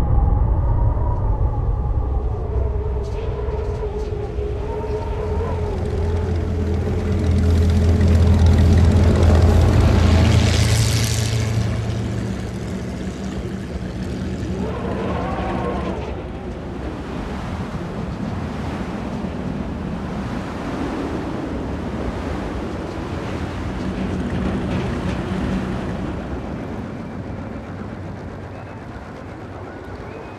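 A deep, steady vehicle rumble under blowing wind, with wavering howling tones drifting over it early on. A rush of wind swells and falls about ten seconds in, then the rumble and wind settle into a softer steady bed.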